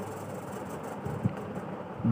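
Steady background hum and hiss in the recording, with a couple of faint soft low knocks a little after a second in.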